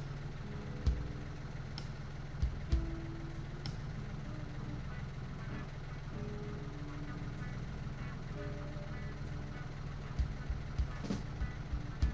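Compact tractor engine idling steadily with a few sharp knocks, under faint music.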